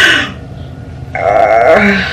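A woman's breathy sigh, then a little over a second in a short, wavering groan from her voice.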